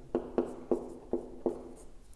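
Marker pen writing on a whiteboard: a run of about six short, sharp strokes and taps as figures are written out.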